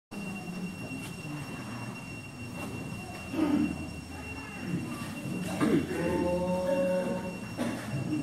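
Electronic keyboard holding steady, unwavering chords from about six seconds in. Before that comes an uneven shuffle and murmur as the choir gets to its feet, with two louder bumps.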